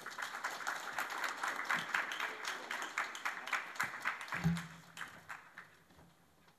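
Audience applauding: many quick, overlapping claps that thin out and die away about four and a half seconds in.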